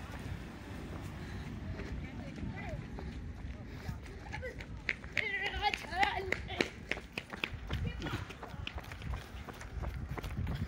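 Running footsteps and the jostling rumble of a camera carried by a runner on a road. About five seconds in there is a short burst of high-pitched voices from people close by.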